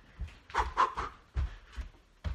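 A person breathing hard while running, with footsteps about two or three a second.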